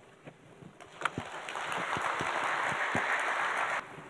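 A small audience applauding. It starts about a second in with a few separate claps, fills out into steady clapping, and stops abruptly near the end.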